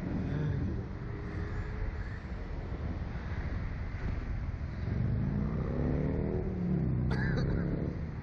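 Wind rushing over the onboard camera microphone of a Slingshot ride capsule as it swings through the air, a steady low rumble. The riders' voices come through over it, most clearly in the second half.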